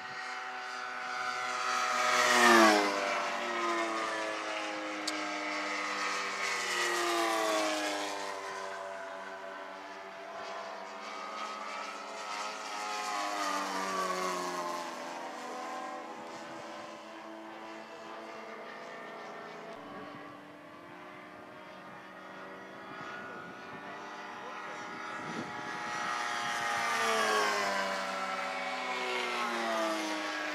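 Engines of several large radio-controlled model biplanes flying by in formation, each pass falling in pitch as the planes go past. The loudest pass comes about two and a half seconds in, with further passes around seven, fourteen and twenty-seven seconds.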